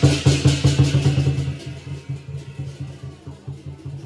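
Lion dance percussion, drum and cymbals, beating a quick steady rhythm. The cymbal crashes fade out about a second and a half in, leaving softer drum strokes.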